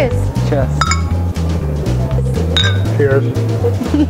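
Glass beer bottles clinking together in a toast, two ringing clinks, the first about a second in and the second past the middle, over background music with a steady bass line.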